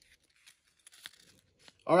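Blue painter's tape crinkling faintly as it is handled: a few small, scattered ticks and crackles.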